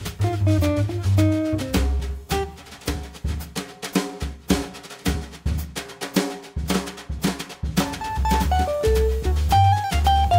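Jazz trio playing a rhumba: drum kit played with brushes, upright bass and acoustic guitar. In the middle the brushes carry the groove nearly alone, with little bass, and the bass and guitar come back in strongly near the end.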